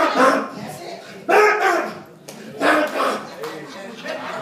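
A preacher giving three short shouted exclamations about a second apart, with quieter gaps between them.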